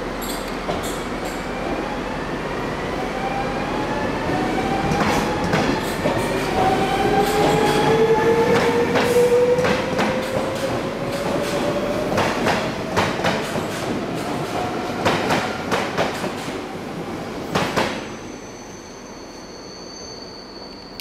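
NS VIRM double-deck electric multiple unit pulling away past the platform, its traction motors whining and rising steadily in pitch as it picks up speed. From about five seconds in its wheels click over the rail joints, and the sound drops away near the end as the last coach passes.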